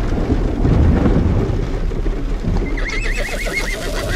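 A horse whinnying near the end, one wavering high call lasting about a second, after a low rumble.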